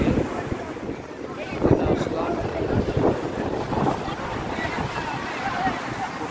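Wind noise on the phone's microphone, coming in irregular gusts, over the wash of breaking sea surf, with faint voices of people on the beach.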